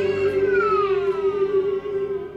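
Worship song ending: singers hold the final note, a steady sustained tone, while one voice slides downward in pitch over it in a closing run.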